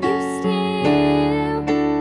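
A slow piano ballad played on an electronic keyboard, with a woman singing over it. Fresh chords are struck about half a second in, again near the middle, and once more shortly before the end.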